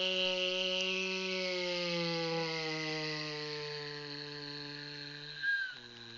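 A person's voice making a long droning airplane-engine hum for the spoon "aeroplane" feeding game, sliding slowly lower in pitch as the spoon comes in to land. It breaks off about five and a half seconds in with a short sharp sound, and a lower drone starts.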